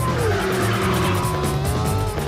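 Action film score with a driving low beat and fast, even high ticking percussion, and over it a car tyre squeal: a pitched skid that drops in pitch at the start and then holds for about two seconds.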